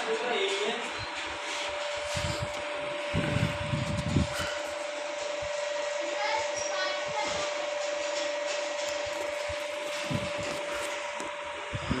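Electric motor and reduction gearbox driving a radial six-plunger grease lubrication pump under trial, with its reservoir stirrer turning through the grease. It runs with a steady hum and a constant whine, and a few low thumps come about three seconds in and again near the end.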